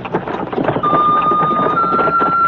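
A Chinese bamboo flute (dizi) begins playing about a second in: one held note that steps up to a higher one near the end. It plays over the steady clattering rattle of a horse-drawn carriage in motion.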